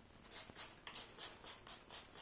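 Hand-pump spray bottle misting water onto hair, a quick run of about eight short hissing sprays at about four a second.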